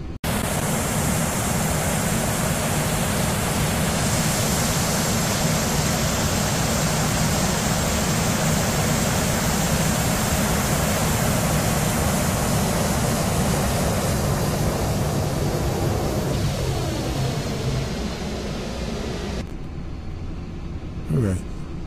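Boeing 747 jet engines in a flight simulator, running steadily as a dense, even rush of noise that starts abruptly and eases slightly near the end.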